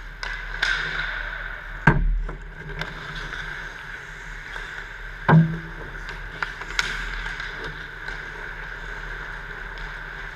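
Ice hockey play near the net: sharp clacks of sticks and puck, with two loud hits about two seconds and five seconds in, and smaller clicks between, over a steady background hum.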